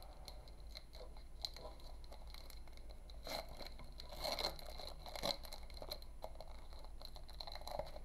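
Foil booster-pack wrapper crinkling and crackling faintly as hands tear it open and work the cards out, with a few louder bursts of crackling in the middle.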